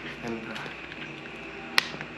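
A single sharp plastic click near the end from a water bottle being raised and tipped up to drink.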